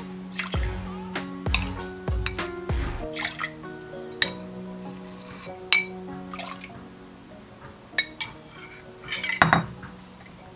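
A spoon stirring liquid in a glass bowl, clinking sharply against the glass several times, over soft background music. Near the end there is a short burst of liquid and glass handling.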